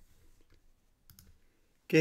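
Near silence with two faint short clicks, about half a second and a little over a second in; a man's voice begins just before the end.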